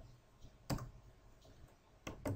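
A single sharp computer mouse click about two-thirds of a second in, in a quiet room.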